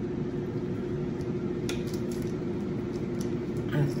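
Steady low room hum with a constant tone, and one faint click a little before halfway.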